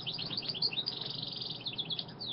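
A small bird chirping in a quick series of short high notes, with a brief trill in the middle.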